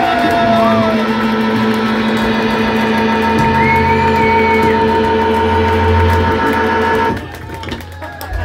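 Live rock band with electric guitar and electric bass holding long, sustained ringing notes over a heavy bass drone, the full sound cutting off abruptly about seven seconds in as the song ends.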